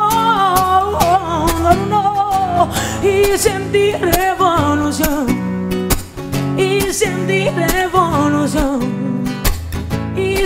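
A woman sings a melody with held, wavering notes, accompanying herself on a strummed acoustic guitar with steady, regular strokes. The music plays without a break.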